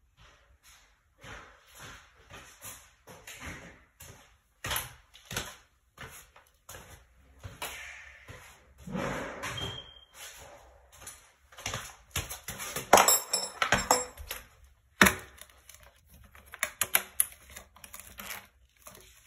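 A string of irregular knocks, clicks and clatters from tools and objects being handled, with brief rustling, loudest and busiest about three-quarters of the way through.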